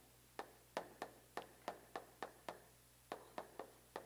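Chalk writing on a chalkboard: a faint run of quick, sharp taps and strokes, about three or four a second, with a short pause midway.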